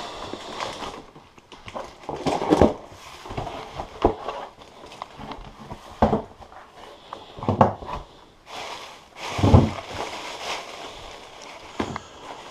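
Cardboard box being opened by hand: packing tape cut and torn, flaps pulled back, with irregular crackling and rustling of cardboard and shredded paper packing.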